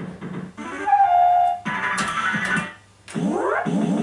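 Golden Dragon fruit machine playing its electronic sound effects and music: a falling two-note beep about a second in, a short jingle, then a quick run of rising electronic sweeps near the end.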